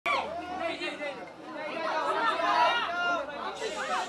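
Several people talking over one another at once: indistinct crowd chatter with no single voice clear.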